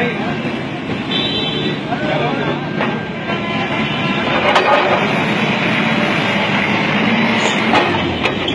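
Forklift engine running as the machine drives forward, with a steady engine note more prominent in the second half, over the voices of a crowd of men.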